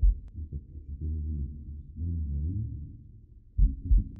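Muffled double heartbeat thumps, one pair at the start and another near the end, with dull, indistinct low sounds between them, as if heard through blocked or deaf ears.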